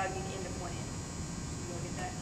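Steady electrical hum and hiss of room tone, with a few faint, brief fragments of speech near the start and near the end.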